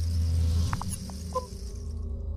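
Logo-reveal sound effect: a deep low rumble under a high airy whoosh, with a few short high blips and pings about a second in as the logo forms. The whoosh fades out near the end, leaving the low drone.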